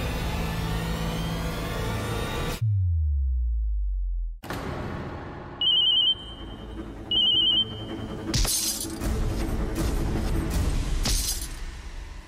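Dramatic background music that drops into a falling low tone, then a mobile phone ringing in two short trilling bursts about a second and a half apart, followed by two sudden noisy hits near the end.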